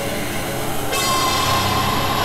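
Horror-score drone: a low sustained hum, joined suddenly about a second in by a shrill, high, held tone like a horn chord.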